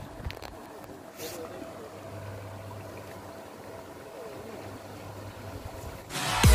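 Push-wave pond aerator running in the water: a steady electric hum over a wash of moving water.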